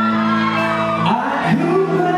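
Live pop ballad performed through a PA: a male singer's amplified voice holding long notes over the band, with the crowd shouting along.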